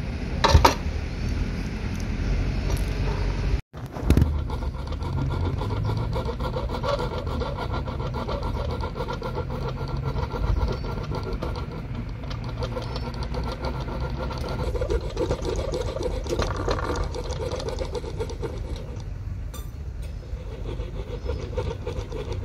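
Fine-toothed jeweler's saw cutting through soft cast lead, trimming the casting flash off a small toy cannon in a steady run of short strokes, with a brief dropout about four seconds in.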